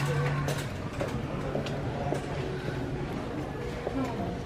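Background noise of a busy retail store aisle, with faint distant voices and a few light clicks from handling.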